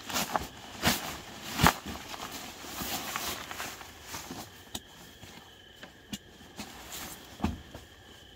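Nylon stuff sack and sleeping pad rustling and crinkling as a self-inflating sleeping pad is pulled out of its sack and laid out, busiest in the first few seconds with a few sharp crinkles, then sparser clicks. A faint steady insect trill sits in the background in the second half.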